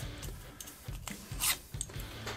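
Small metal guitar bridge being handled in the fingers: light rubbing and a few short clicks, the sharpest about one and a half seconds in.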